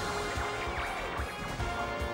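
Game-show opening theme music: sustained synthesizer chords with swooping sweeps over a pulsing low beat and percussive hits.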